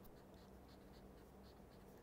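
Faint scratching of a pen writing letters on paper, in short separate strokes.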